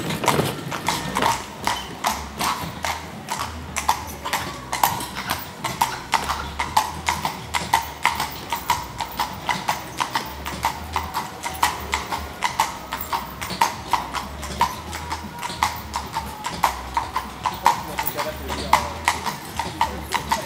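A carriage horse's hooves clip-clopping steadily on the paved street, about three to four strikes a second.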